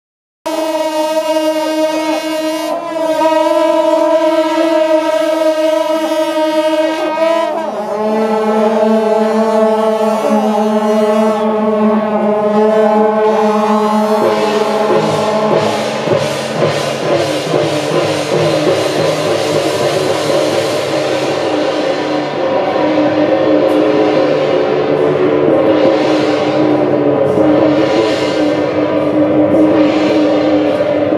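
Procession horns with large flared metal bells blowing long held notes that shift pitch every few seconds. From about halfway they give way to a denser tangle of several notes, with struck percussion coming in near the end.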